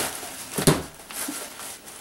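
Scissors and tissue paper being handled on a tabletop: a click at the start, then a single sharp knock about two-thirds of a second in, with faint papery scratches.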